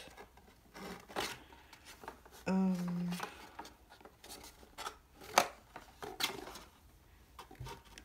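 Small plastic camera parts and a cardboard box being handled on a tabletop: scattered clicks and knocks, the sharpest a little past halfway, with a short hummed voice sound about two and a half seconds in.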